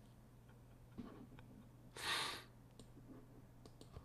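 Near-quiet room with a few faint small clicks and one short breathy rush of air about two seconds in, a person exhaling close to the microphone.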